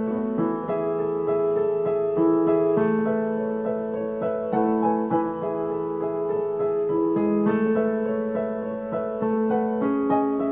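Digital piano playing a solo original composition: a steady flow of notes over held low notes.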